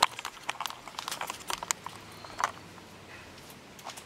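Irregular light clicks and knocks, most of them in the first two and a half seconds, with a quieter stretch after.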